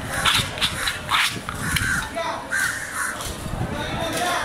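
Crows cawing, a few harsh calls close together in the first second or so, over a background of voices.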